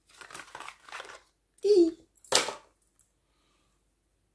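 Packaging rustling and crinkling as a small perfume-oil box is opened and the bottle slid out, faint and lasting about a second, followed by a brief vocal sound and a short sharp hiss-like noise a little past halfway.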